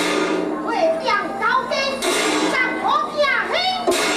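A Teochew opera performer's high-pitched, stylised stage voice in short phrases that slide up and down in pitch, over a steady low hum.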